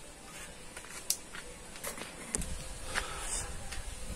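Scissors cutting through upholstery material: a few faint, scattered snips and clicks, the sharpest about a second in.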